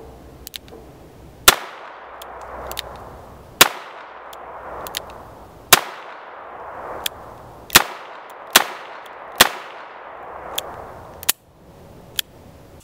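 A Smith & Wesson Model 64 revolver firing .38 Special rounds: five loud shots about two seconds apart, each with a trailing echo. A few fainter cracks come in between near the end.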